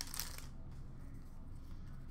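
Faint handling of a stack of trading cards, the cards sliding against each other, with a soft click or two in the first half-second over a low room hum.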